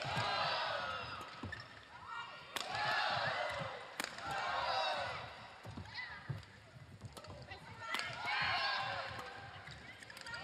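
A badminton rally: several sharp racket strikes on the shuttlecock, with players' shoes squeaking on the court mat between them.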